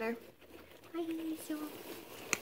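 Guinea pig chewing hay close up, with soft rustling of the hay; a woman gives a short two-part hum, like "mm-hmm", about a second in.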